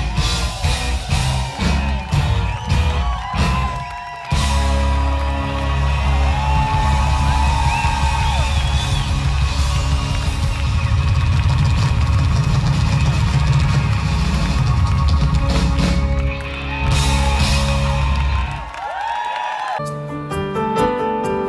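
Live pop-rock band playing loud with drums, electric guitars, bass guitar and keyboards. There is a brief break about four seconds in, and the bass and drums drop out near the end.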